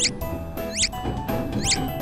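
Background music with three short, high-pitched squeaky chirps, about a second apart: a cartoon sound effect.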